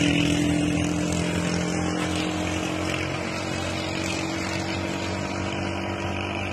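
A small vehicle engine running at a steady idle, its pitch unchanging, easing slightly in level over the first couple of seconds and then holding steady.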